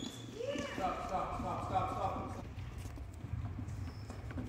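High-pitched children's voices calling out in a reverberant gymnasium, over scattered taps and thuds of footsteps and a soccer ball on the hardwood floor.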